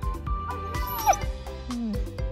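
Background music with a steady beat, over which a pit bull gives a short whine about halfway through, sliding down in pitch.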